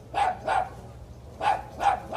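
A dog barking: two quick barks, a pause of about a second, then two more.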